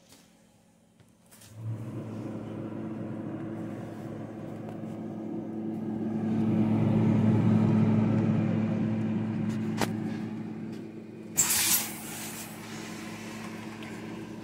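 A Mabe refrigerator running: a steady electric hum with airflow noise that sets in after a second or two, grows louder through the middle and then eases off. There is a single click, then a short rustling burst near the end.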